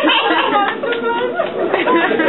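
A woman's wordless vocal sounds through a PA microphone, mixed with audience chatter in a large room.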